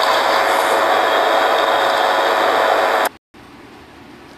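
Steady background hiss picked up by the phone's microphone during a screen recording. It cuts off suddenly about three seconds in as the recording stops, leaving a much fainter hiss.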